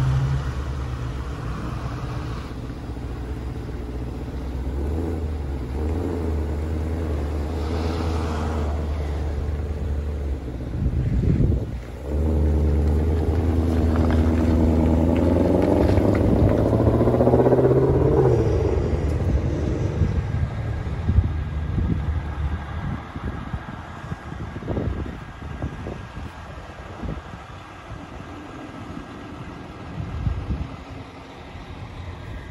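Engine of a 2020 Shelby GT500, a supercharged V8, running at low speed as the car is driven off the transporter, its revs rising for several seconds in the middle and then easing off.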